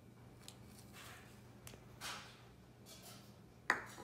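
Faint swishes and taps of granulated sugar tipped from a plastic measuring cup into a plastic mixing bowl, with a few small clicks. Near the end comes a sharp knock as the cup is set down on a wooden table.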